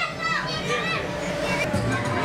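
Children shouting and squealing as they play in an inflatable bounce house, with music in the background.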